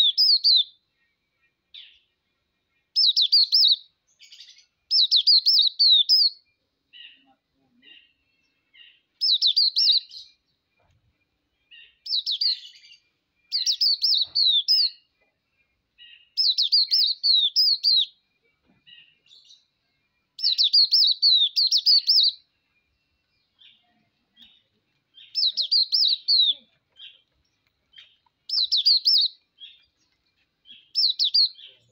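Hume's white-eye (Zosterops auriventer) singing: about ten bursts of rapid, high twittering, each a second or two long and made of quick falling notes, with soft single chirps in the gaps between.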